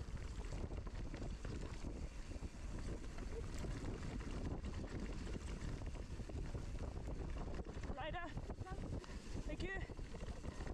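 Mountain bike descending a dirt forest trail at speed: a steady rush of wind on the microphone with tyre noise and the rattle of the bike. Near the end, two short wavering voice calls.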